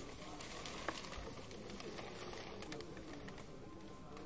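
Low indoor room ambience: a steady hiss with faint background murmur and a few light clicks.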